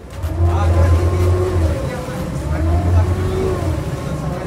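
Speedboat under way on its twin Honda outboard engines, with wind buffeting the microphone in two long swells.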